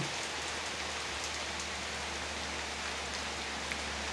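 Heavy rain falling steadily on tree leaves and bare ground: an even hiss with a few single drops standing out.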